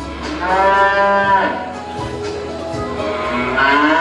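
A cow mooing twice, each a long call that rises and then falls, played as a stage sound effect over soft background music.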